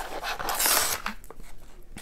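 A crinkly resealable tool-kit pouch being pulled open by hand: a short hissing tear or rip about half a second in, then quieter rustling of the pouch.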